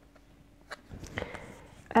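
Faint handling noise as a small paper card is held and turned over: a single sharp click a little under a second in and a few soft rustles. Near the end, a woman's hesitant 'ähm' begins.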